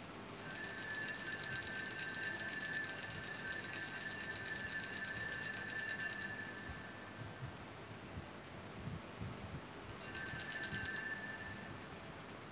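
Altar bells shaken in a continuous high jingling ring for about six seconds, then a second, shorter ring near the end. This is the ringing that marks the elevation of the chalice at the consecration.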